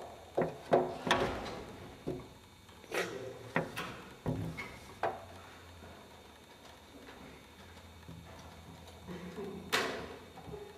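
A series of short, sharp knocks and clicks, several in the first five seconds and a louder one near the end, with quiet room noise between them.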